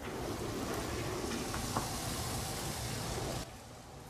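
Steady hissing noise from the footage's own sound, with no clear tone or rhythm and a few faint clicks in the middle. It cuts off abruptly about three and a half seconds in.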